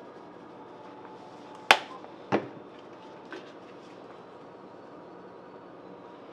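Salt and pepper shakers being handled over a stainless saucepan: a sharp click about a second and a half in, a softer knock just after, then a faint tap, over a quiet steady background.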